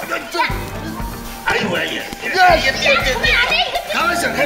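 Background music with a bass line that comes in about half a second in, under wordless yelling and struggling voices of people scuffling.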